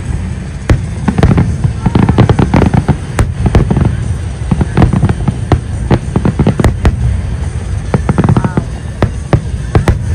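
Fireworks display: aerial shells bursting in rapid succession, several bangs a second over a deep, continuous rumble.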